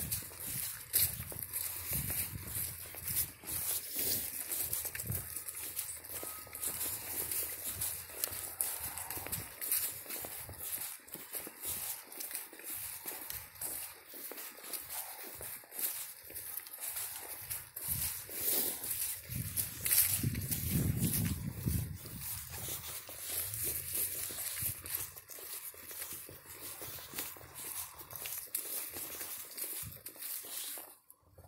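Footsteps through dry grass and fallen leaves, with irregular crackling and rustling throughout.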